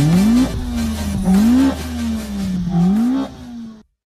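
Car engine revved three times, each rev rising quickly in pitch and falling away more slowly; the sound cuts off near the end.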